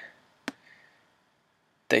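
A single short mouse click about half a second in, against near silence; the voice returns right at the end.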